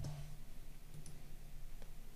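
Computer mouse clicks, one at the start and two fainter ones later, over a low steady hum of room tone.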